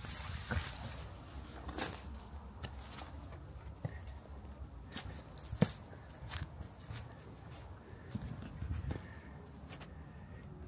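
Footsteps on leaf-covered concrete, irregular steps and scuffs, with one sharper knock about halfway through.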